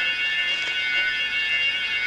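Horror film score music: a shrill chord of several high notes held steadily, with no beat.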